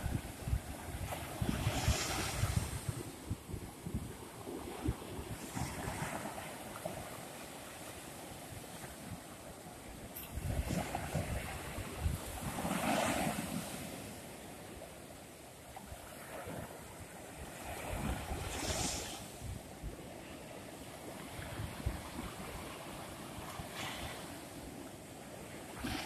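Small ocean surf waves breaking and washing up the sand, a swell of hiss every four to six seconds, with wind buffeting the microphone.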